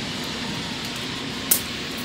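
Steady hissing noise, with one sharp click about one and a half seconds in.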